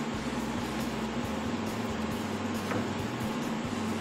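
Steady background machine hum and hiss, with one light click a little under three seconds in.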